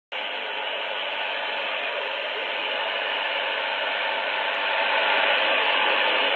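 Shortwave receiver's loudspeaker giving a steady, muffled static hiss in AM mode on 6070 kHz, the CFRX Toronto signal barely standing out from the noise. The hiss grows a little louder near the end.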